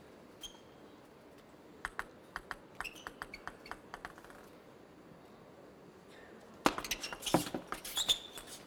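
Table tennis ball striking bats and table: a quick run of faint light clicks in the first half, then louder clicks over a rise of arena noise near the end.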